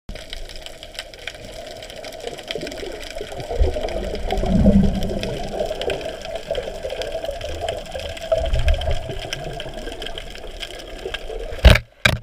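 Underwater ambience: a steady hiss dotted with faint crackling ticks, with a low muffled rumble about four to five seconds in and again briefly around eight seconds. A sharp knock near the end is the loudest sound.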